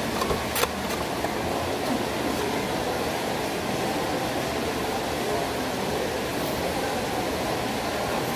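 Steady background noise of a large mall food court, with a couple of faint clicks about half a second in.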